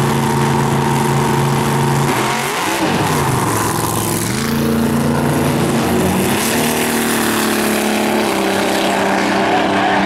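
Drag race car engine running hard at the starting line, its pitch dipping and then climbing about two to four seconds in as it launches. It then pulls down the track with its pitch changing in steps.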